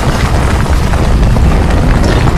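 Loud, continuous deep rumble from a multimedia water show's soundtrack over its loudspeakers, a sound effect under the projection of giant stones.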